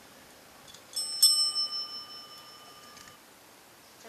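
A chrome desk service bell struck by a pet's paw: two quick strikes about a second in, then a clear ring that lasts about two seconds before it is cut short.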